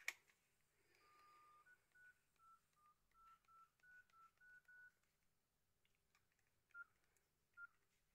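Nokia N80 keypad tones: a sharp click at the very start, then a faint run of about eleven short beeps of slightly differing pitch as a star-hash service code is keyed in, the first beep longer and lower than the rest. Two more beeps come near the end.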